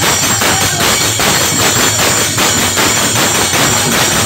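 Live bhajan accompaniment: a dholak barrel drum beaten by hand to a fast, even beat, with a group of men clapping along, loud and unbroken.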